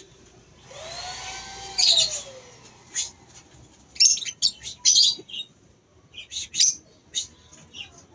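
Caged lovebirds chirping: bursts of shrill, rapid calls that come and go, loudest about two seconds in and again around four to five seconds. A lower sliding tone rises and falls in the first couple of seconds.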